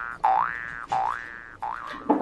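A cartoon-style 'boing' sound, repeated: short springy twangs that each rise quickly in pitch, about four in two seconds, growing fainter.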